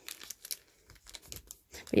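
Pencil packaging crinkling and rustling as it is handled, a quick run of small crackles.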